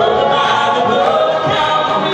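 Southern gospel vocal group of men and women singing in harmony through microphones, with hand claps on the beat about twice a second.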